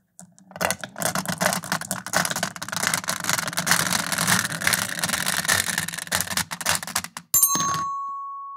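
Steel marbles rolling and clattering down a plywood ramp into a 3D-printed plastic marble divider, a dense rattle of clicks over a low rolling rumble as they fill its channels. Near the end, a sharp strike followed by a single ringing tone that holds and slowly fades.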